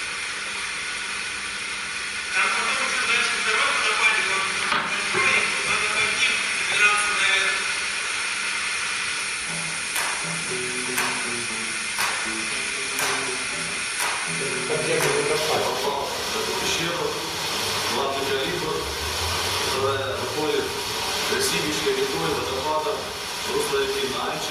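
Background music with a beat of about one stroke a second through the middle, over a steady hiss.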